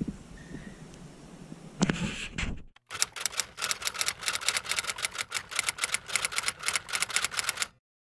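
A typewriter clacking sound effect: rapid keystroke clicks, several a second in uneven runs, starting about three seconds in and stopping abruptly just before the end. Before it there is faint room tone with a brief bump about two seconds in.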